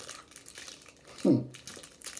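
A candy wrapper crinkling as it is handled, a scatter of small light crackles, with a short voiced "hmm" about a second in.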